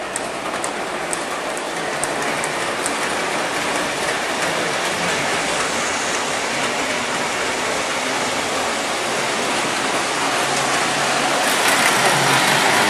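Williams O-gauge model train with passenger cars running on the layout's track, a steady rolling rumble of wheels and motor, with light ticks in the first few seconds.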